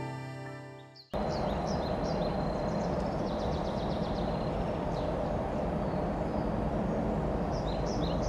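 Piano music fading out in the first second, then an abrupt cut to steady outdoor background noise with small birds chirping in short bursts, more of them in the first few seconds and again near the end.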